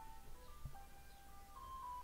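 Ice cream truck's music chime playing a simple melody of single notes, faint.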